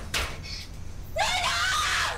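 A woman screaming for help, one long high-pitched cry starting a little over a second in, after a short breathy sound at the start.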